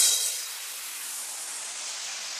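The house beat cuts out: a bright hissing wash fades within about half a second, leaving a steady high hiss with no beat.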